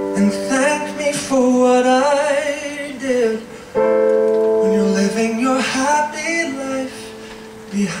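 A man singing a slow ballad live with vibrato on long held notes, accompanied by solo piano chords. A new piano chord is struck about four seconds in.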